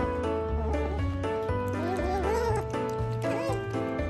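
Asian small-clawed otter making a few short, wavering high squeaky calls while begging for food, the longest about two seconds in. Background music with a steady beat plays underneath.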